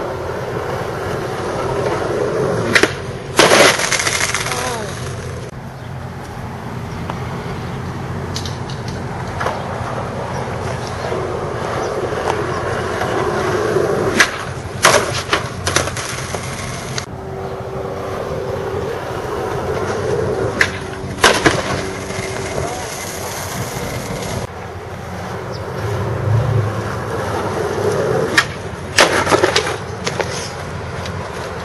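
Skateboard wheels rolling on asphalt throughout, with sharp clacks of the board striking the pavement several times, mostly in quick pairs: about 3 s in, around 14–15 s, around 21 s and near the end.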